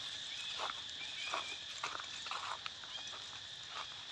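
Footsteps crunching in dry fallen leaves, a crunch about every half second, over a steady high-pitched drone of insects.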